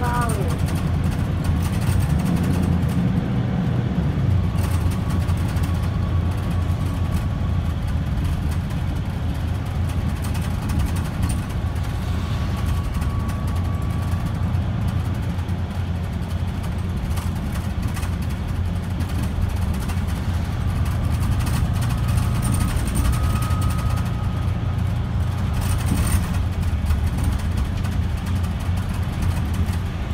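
Mercedes-Benz Citaro O530 bus running along the road, heard from inside the passenger cabin: a steady low engine and road drone. A thin whine comes and goes over it.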